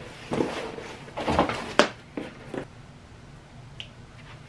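Packaging being handled and rustled as a parcel is opened, in a few short rustles with a sharp click about two seconds in, then dying down.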